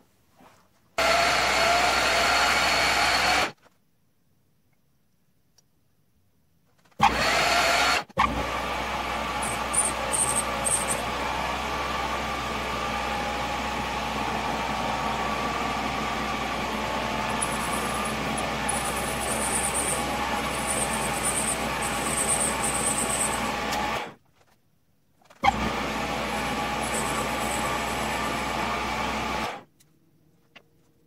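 Metal lathe running, its spindle turning an aluminium piston while a ground high-speed-steel tool plunges in to cut the O-ring grooves. The sound comes in four stretches that start and stop abruptly, with near silence between; the longest runs about sixteen seconds.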